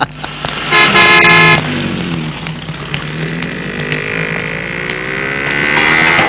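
A vehicle horn honks once, loud and just under a second long. Then a motor vehicle engine runs, its pitch dipping and then rising again.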